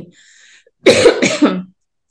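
A woman coughing: one short, loud cough about a second in.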